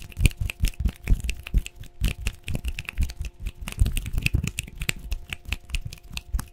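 Fast ASMR hand sounds right at a microphone: fingers tapping, flicking and brushing on and around the mic head in quick irregular bursts of clicks and deep thuds, several a second.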